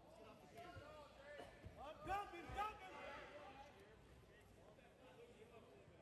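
Faint, distant shouting voices in a large room, loudest in a couple of short shouts about two seconds in, over quiet background noise.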